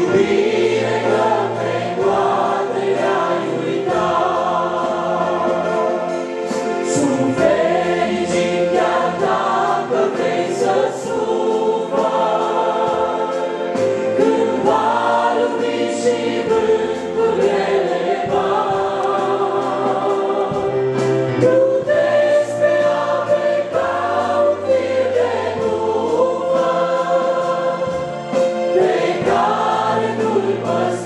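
A church congregation singing a Romanian hymn together, many men's and women's voices in unison, with held low notes underneath that change every few seconds.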